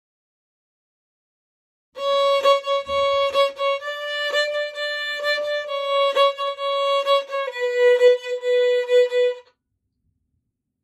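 Solo violin played fiddle-style with shuffle bowing, a steady pulse of accented and lighter bow strokes, on a simple melody on the A string. The phrase starts about two seconds in, moves between a few neighbouring notes, steps down near the end, and stops shortly before the end.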